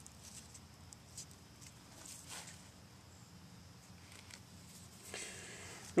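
Faint rustling and a few soft clicks of natural cordage being handled and wrapped around the green-wood end of an improvised bow-saw frame.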